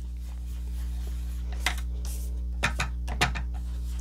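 Round ink-blending tool being swirled and dabbed on cardstock, giving a few faint soft rubs and taps over a steady low hum.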